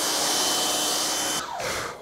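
Pressure washer spraying water onto a car's paint, a steady hiss with a faint steady whine, cutting off suddenly about a second and a half in as the trigger is released.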